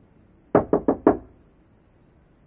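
Knuckles knocking four times in quick succession on a painted wooden door, the knocks evenly spaced, about a sixth of a second apart.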